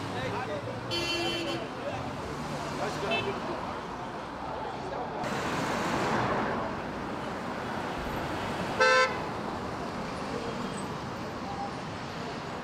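Vehicle horns tooting over a steady hubbub of many voices: a short toot about a second in, a fainter one near three seconds, and the loudest, a brief blast, just before nine seconds.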